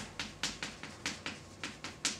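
Chalk writing on a blackboard: a quick run of sharp taps and clicks, about five a second, as the letters are struck onto the board.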